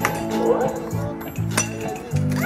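Party music with a steady beat under people's voices, with two sharp knocks, one right at the start and one about a second and a half in, from a stick hitting a piñata.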